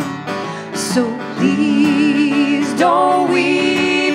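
Live folk song: singing with vibrato on long held notes over a strummed acoustic guitar.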